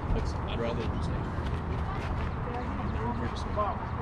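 Scattered, faint voices of players and spectators calling and chatting at a youth baseball field, over a steady low background rumble.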